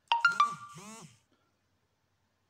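Smartphone notification tone for incoming WhatsApp messages: three quick bright chime notes followed by a short wavering tone, lasting about a second.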